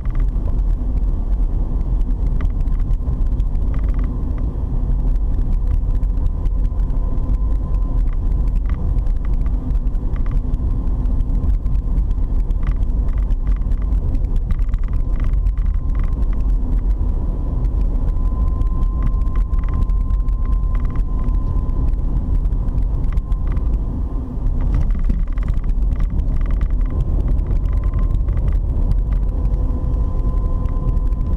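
Steady low rumble of a car's engine and tyres heard from inside the moving cabin, with a faint thin whine running through it.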